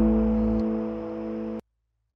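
Final chord of a blues-rock song on guitar, ringing out and slowly fading. The lowest note stops about half a second in, and the sound cuts off abruptly at about a second and a half.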